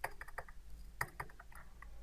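Computer keyboard being typed on: an irregular run of about ten faint key clicks, a few at the start and a quicker cluster about a second in.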